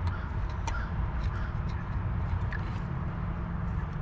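Plastic wiring-harness connector being pushed onto an LS engine's knock sensor, with a few faint light clicks as it is worked into place and latches. A steady low hum runs underneath.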